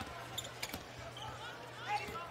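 Basketball game court sound: a few short knocks from the ball and shoes on the hardwood floor over a steady low arena hum.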